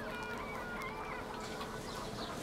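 Quiet outdoor ambience with faint calls of distant birds in the first second or so, over a low steady hum.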